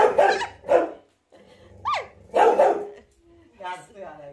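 Dog barking in loud short bursts: a run of barks in the first second, then a high yelp that bends up and down and leads into another burst about two and a half seconds in. It is barking at an electric mosquito-swatter racket held close to it, a racket that has given it a shock before.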